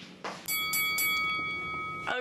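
Transition sound effect for an animated title card: a short whoosh, then a bright bell chime struck about three times in quick succession, its tones ringing on and stopping as speech comes in.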